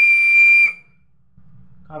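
Plastic guitar-shaped toy whistle blown once: a single loud, shrill, steady note lasting under a second.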